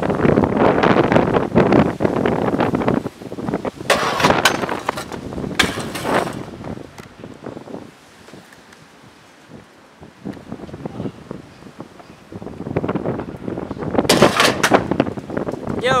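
Stunt scooter wheels rolling hard over concrete, with several sharp clattering impacts of the scooter hitting the ground about four to six seconds in; after a quieter stretch, more rolling and another set of sharp impacts come near the end.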